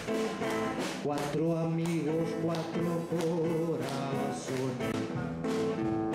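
Acoustic guitar strummed in a steady rhythm as a song's introduction. A long held melody note with a wavering pitch rises over the strumming from about a second in to nearly four seconds.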